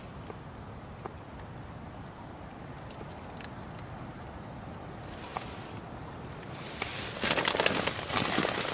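Steady low wind noise against a polythene sheet shelter, with a few faint ticks. From about seven seconds in, the polythene crinkles and crackles loudly as it is pushed and moved.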